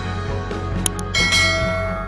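Background music with a bright bell-like chime sound effect, the subscribe-button notification bell, ringing out a little past a second in and fading slowly, just after two quick clicks.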